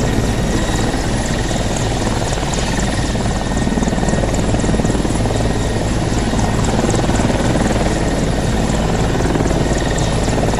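Mil Mi-24V Hind helicopter running as it taxis: its five-blade main rotor beats fast and steady over the high, even whine of its two TV3-117 turboshaft engines.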